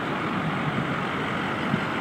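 Steady rumble of idling emergency-truck engines mixed with street noise, with no distinct event.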